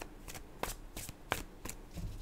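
A deck of tarot cards being shuffled by hand, heard as a string of short, crisp card snaps about three a second.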